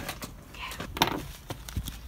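Handling of paper seed packets on a table: scattered light clicks and rustles, with a sharper click about a second in.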